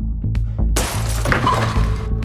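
Trailer score with a deep pulsing bass, cut through a little under a second in by a sudden loud shattering crash that lasts about a second, as of something breaking.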